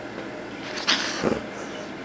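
Kitten sounds at play: a short breathy hiss a little under a second in, then a brief low sound just after.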